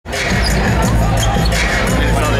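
Basketball being dribbled on a hardwood arena court, the bounces mixed with arena music and crowd voices.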